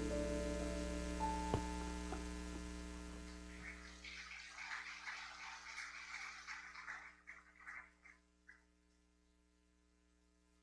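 Electric keyboard holding a soft chord, with a few notes changing in the first two seconds, fading out over about four seconds. Faint scattered crackles and clicks follow and stop about eight and a half seconds in, leaving a low electrical hum from the sound system.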